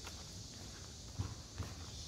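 Faint footsteps on a paved street: a few soft steps of someone walking, over a steady high-pitched hiss.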